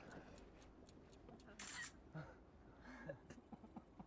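Near silence, with faint scattered ticks and a brief soft hiss about one and a half seconds in.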